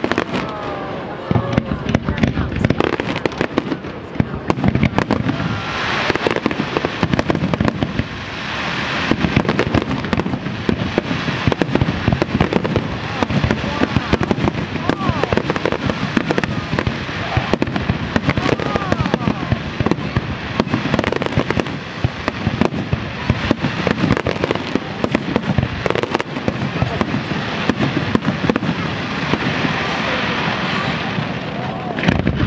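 Aerial fireworks finale: a dense, continuous barrage of shell bursts, with sharp bangs following one another many times a second.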